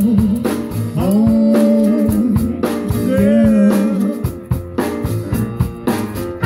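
Live blues band playing, with a horn section of saxophone, trombone and trumpet, upright bass, electric guitar and drum kit. Two long held phrases sound in the middle, then steady drum hits near the end.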